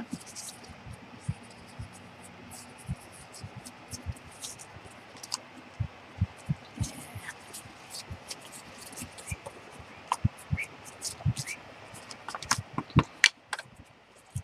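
Paper being handled on a tabletop: light rustles, scrapes and scattered small taps as sheets of junk mail are picked up and moved, with a quick run of sharper clicks and taps near the end.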